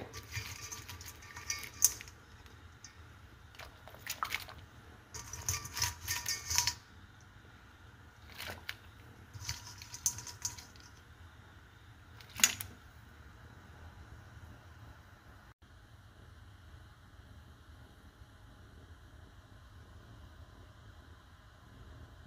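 Live yabbies (freshwater crayfish) handled out of a stainless steel colander and dropped into a pot of water: a series of irregular scraping, clattering rustles from shells on metal and splashes in the first dozen seconds, then only a low steady background.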